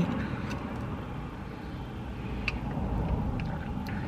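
Steady low rumble inside a car cabin, with a few faint clicks.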